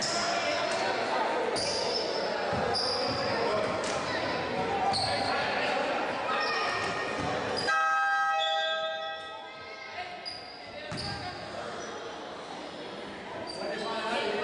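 Basketball being dribbled on a hardwood gym floor, with short high sneaker squeaks and voices echoing in the hall. About eight seconds in, a steady horn-like tone sounds for about a second and a half.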